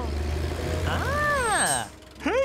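A cartoon character's wordless "ooh" of wonder, rising and falling in pitch about a second in, over a steady low engine hum from the animated machines.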